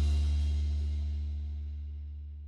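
A rock band's closing chord dying away. The higher tones fade out first, and a low bass note rings on longest.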